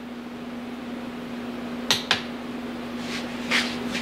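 Click-type torque wrench being handled on an engine's crankshaft nut after clicking out: two sharp metallic clicks about two seconds in, then two softer rasping sounds near the end, over a steady hum.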